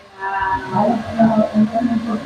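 A man's voice: indistinct talking with drawn-out, steady-pitched syllables.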